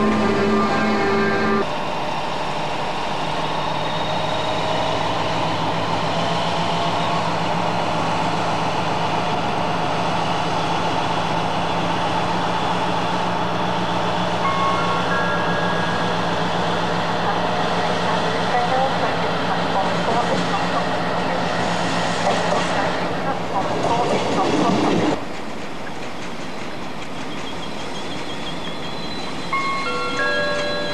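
Class 60 diesel freight locomotive working past with a train of wagons: a steady engine drone over wheel and rail noise. The sound cuts off abruptly near the end.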